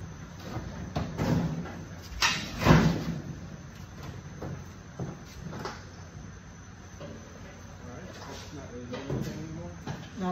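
Sheet-steel cab of a 1941 Chevrolet pickup, hanging from a lifting strap, knocking and scraping against the chassis as it is pushed into place by hand. There are a few clunks, the loudest about two to three seconds in, then scattered lighter knocks.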